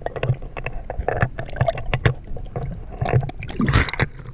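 Muffled knocks, clicks and a low rumble of water moving around a camera held underwater. Near the end comes a louder splashing rush as the camera breaks the surface.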